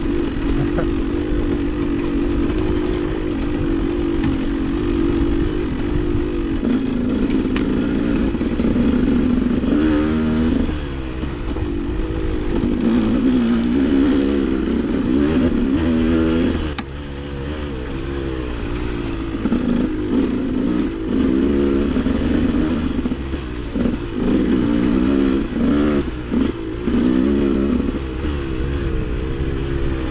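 Dirt bike engine under way, revving up and easing off again and again as the throttle is worked along the trail, with several brief drops in revs.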